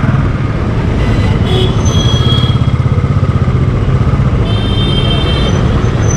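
Motorcycle engine running steadily while riding, its exhaust pulsing fast and evenly, with wind and road rush around the bike.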